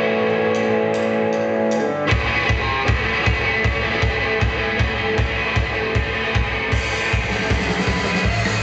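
Live punk rock band: a held electric guitar chord rings steadily, then about two seconds in the drums and the rest of the band come in with a steady, driving beat.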